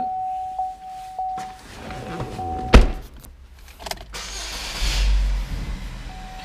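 A single loud, sharp thump about halfway through, then a rush of noise over a low rumble near the end: a 2017 GMC Terrain's driver's door shutting and its engine starting.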